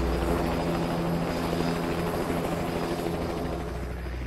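Steady rotor hum with a fast flutter, slowly fading.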